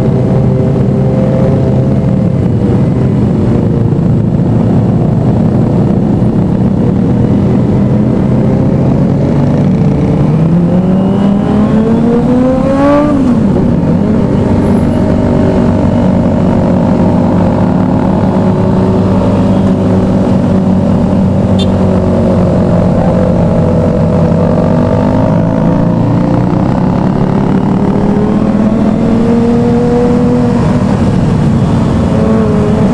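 A sport motorcycle's engine running steadily at road speed. About ten seconds in, the revs climb for roughly three seconds, then drop sharply at a gear change and settle back to an even cruise.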